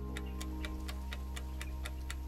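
Clock ticking sound effect, quick even ticks at about six a second, over sustained low notes of background music.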